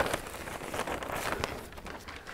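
Potting soil pouring from a plastic bag into a large container: a crackling, rustling hiss that fades away.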